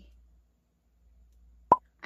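A single short, sharp pop about three-quarters of the way through, the loudest thing here; otherwise near silence.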